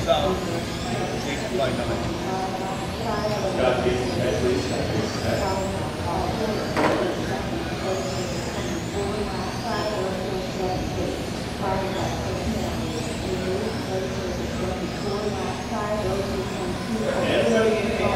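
Electric 1/10-scale RC cars racing on a carpet track, their motors whining in short rising and falling glides as they accelerate and brake, over the background chatter of a crowded hall.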